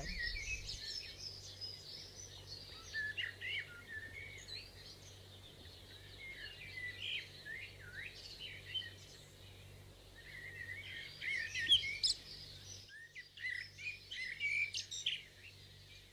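Forest birds singing and calling in a busy chorus of quick, high chirps and whistles. The faint background hiss drops out for a moment about three-quarters of the way through, and the chirping carries on.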